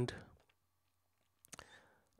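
The end of a spoken word, then about a second of quiet, then a couple of short clicks about one and a half seconds in, followed by a faint breathy sound.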